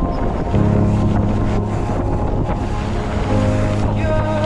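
Wind buffeting the microphone of a camera on a moving mountain bike, a steady rushing noise, with background music of held low notes underneath.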